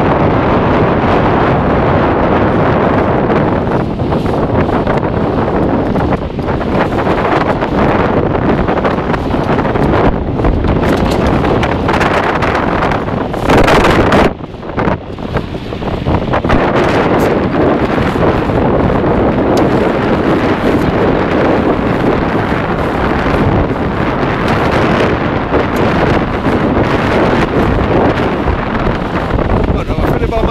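Wind buffeting the microphone on a sailing boat under way, with water rushing along the hull. It peaks in a louder gust about halfway through, then drops briefly.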